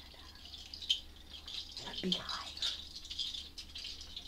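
Soft, continuous rattling from a small hand-held percussion rattle played lightly as a dense patter of tiny strokes. A brief vocal sound slides down in pitch about two seconds in.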